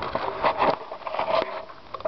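Handling noise from a handheld camera being swung about: irregular rustles, knocks and scrapes.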